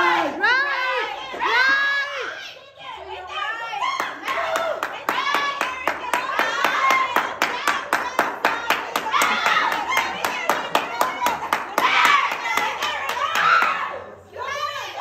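Group of people clapping in a steady rhythm, about four claps a second, from about four seconds in until near the end, with excited voices shouting over it. Loud voices alone fill the first few seconds.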